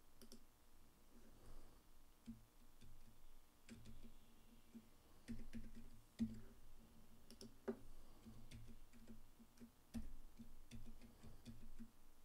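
Faint, irregular clicks and taps of a computer keyboard and mouse in use, spaced unevenly with short pauses between.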